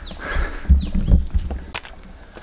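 Footsteps and heavy, out-of-breath breathing of a person climbing stone steps, with low thumps from the handheld camera moving; a steady high insect drone runs underneath.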